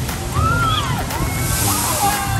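The splashdown wave of a shoot-the-chutes boat ride crashing over a railing: a heavy rush of sloshing water, with the hiss of falling spray growing brighter near the end.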